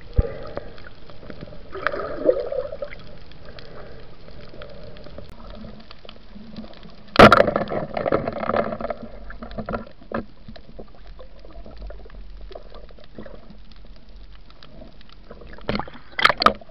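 Water gurgling and sloshing around an underwater camera, with a sudden loud knock about seven seconds in followed by a second or two of bubbling and rustling, and two sharp clicks near the end.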